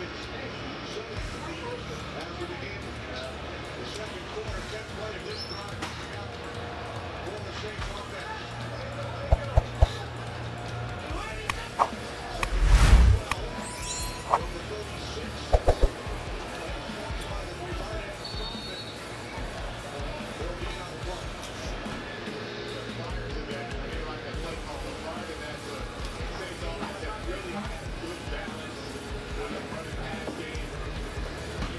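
Background music over restaurant room noise while two people eat. A few sharp knocks come about a third of the way in, then one heavier low thump, then two more knocks a few seconds later.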